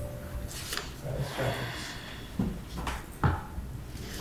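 A few sharp knocks and clicks, the loudest about three seconds in, over low room noise.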